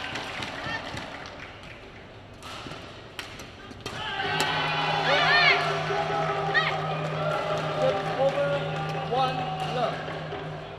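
A short badminton rally: a few sharp racket strikes on the shuttlecock in the first four seconds. As the point ends it turns into a louder stretch of sustained tones with a steady low hum and several quick squeaky chirps.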